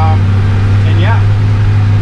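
1954 Willys pickup's engine running at a steady cruise under way, heard from inside the cab as a constant low drone with road noise.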